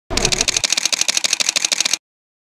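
Camera shutter sound effect firing in a rapid continuous burst, about fifteen clicks a second, with a low rumble under the first half-second. It cuts off suddenly.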